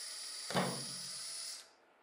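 Cordless drill spinning a twist bit through a plastic bottle cap: a steady high-pitched whine with one brief louder burst about half a second in as the bit cuts into the plastic. The drill stops suddenly about a second and a half in.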